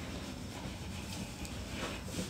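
Quiet room tone: a steady faint hiss with no distinct sound events.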